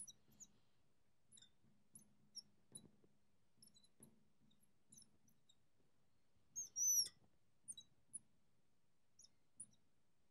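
Marker squeaking and tapping on the glass of a lightboard during writing: a string of short, high squeaks, with one longer, louder squeal about seven seconds in.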